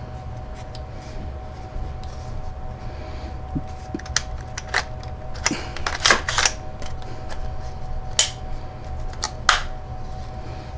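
Sharp metallic clicks and knocks from an AR-15 rifle being handled and turned over, a handful of them, mostly in the second half, over a faint steady hum.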